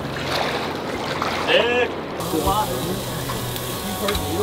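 River water sloshing and splashing around people wading in the shallows, with short calls and laughter. About two seconds in, it cuts to a steady hiss of hot dogs sizzling on a small portable propane grill.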